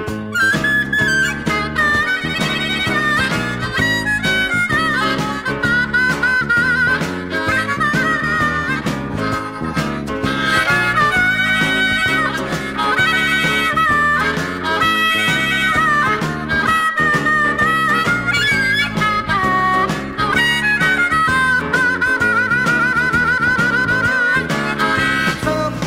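Harmonica solo over a rock band's backing with drums and bass, in an instrumental break of a gospel song; the harmonica plays a melodic line with bent, wavering notes and vibrato.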